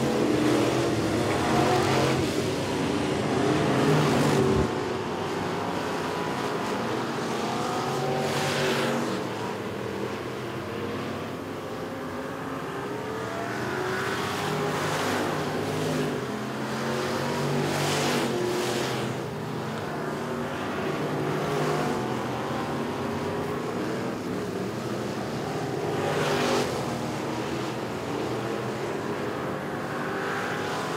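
Several dirt-track street stock race cars running laps together, their engines rising and falling in pitch as they pass the microphone again and again.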